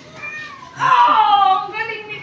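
A puppy's long, high whining cry about a second in, falling in pitch, followed by a few shorter cries.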